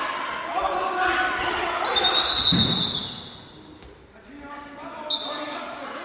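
Handball bouncing on a sports-hall floor amid players' calls, then a high referee's whistle about two seconds in, held for about a second, with a short second blast near the end.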